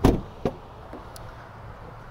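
Rear door of a Ford F-150 SuperCrew pickup being opened by its outside handle: a sharp clunk of the latch releasing, then a lighter click about half a second later.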